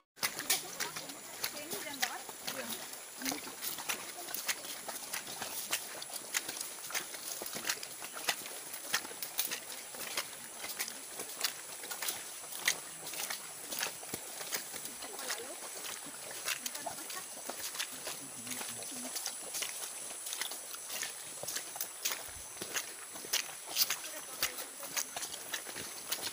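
Hikers' footsteps on a dry, leaf-strewn dirt trail, many short irregular steps and rustles, over a steady high-pitched hum of forest insects. Faint voices come through now and then.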